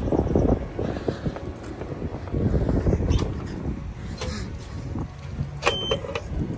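Footsteps climbing concrete steps, with wind buffeting the microphone. Near the end comes a short, high beep from a key-card reader as the card is swiped.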